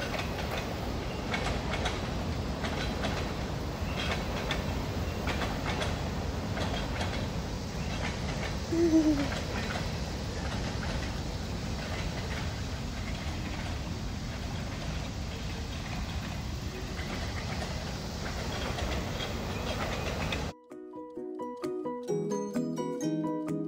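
Steady outdoor rumble of wind buffeting a handheld phone microphone while walking, with scattered light clicks of handling and steps and a brief falling squeal about nine seconds in. Background music starts abruptly near the end.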